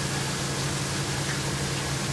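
Steady background noise: an even hiss with a low, constant hum underneath, and no distinct event.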